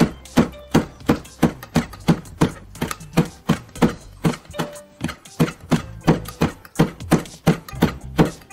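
Kitchen knife chopping a red chili into thin strips on a plastic cutting board: a steady rhythm of about three sharp knocks a second as the blade strikes the board.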